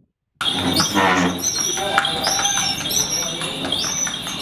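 Street ambience that starts suddenly about half a second in: people talking, and a bird repeating a short, high chirp.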